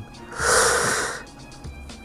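A man's loud, breathy exhale of frustration close to the microphone, lasting under a second, at a lost roulette bet. Faint background music runs underneath.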